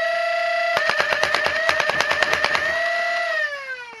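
Lepus Mk1 3D-printed fully automatic Nerf blaster emptying a full magazine: the motors whine up to speed, then a rapid string of shots fires in just under two seconds, the whine dipping slightly with each shot. Once the mag is empty the whine winds down in falling pitch.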